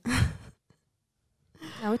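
A woman sighs once into a close microphone: a short, breathy exhale of about half a second, followed by silence.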